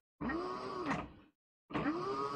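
Brushless hub motor driven by a VESC controller, spinning up and back down twice, its whine rising and then falling in pitch each time.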